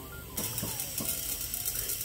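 Black sesame seeds crackling as they roast in a covered steel pan, a fast, irregular run of small ticks and pops starting about a third of a second in.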